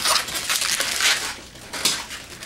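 Inflated latex twisting balloons being handled: rubber rubbing, squeaking and crinkling against rubber and skin, with a few sharper squeaks.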